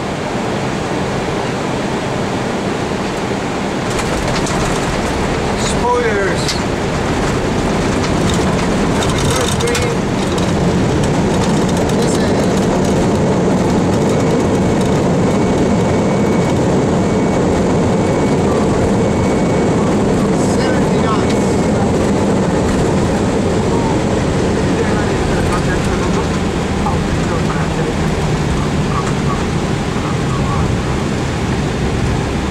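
Flight-deck noise of an Airbus A320-family airliner on its landing rollout: a loud, steady rumble of engines and runway noise that grows louder about four seconds in and holds as the jet slows.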